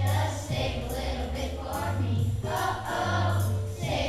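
Children's choir singing a song together, with instrumental accompaniment holding low notes underneath.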